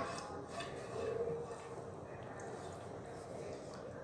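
Faint kitchen handling sounds over quiet room tone: thick sauce being pushed out of a frying pan with a plastic spatula onto pasta in a glass dish, with a small click at the start.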